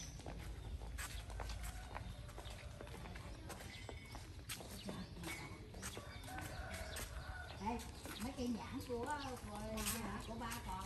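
Footsteps on a tiled pavement: irregular short taps throughout. Faint voices come in near the end.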